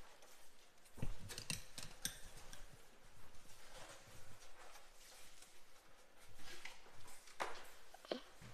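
Faint packaging handling: a metal oven baking tray slid out of its cardboard sleeve and plastic wrap, with scattered light scrapes, rustles and clicks.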